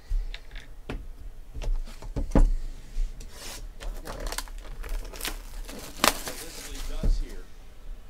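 Knocks and taps of a cardboard trading-card box being set down and handled on a table, then plastic shrink-wrap being torn off and crinkled for about three seconds around the middle.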